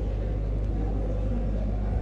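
Steady low hum with faint background room noise and no distinct event.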